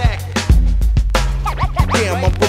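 Instrumental stretch of an old-school hip-hop track: a heavy bass line and drum beat, with turntable scratches cutting in near the start and again after about a second and a half.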